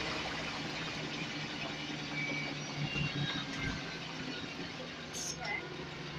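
Inside a Scania L94UB single-deck bus: the diesel engine runs with a steady low hum under a constant background of cabin noise, easing slightly quieter toward the end.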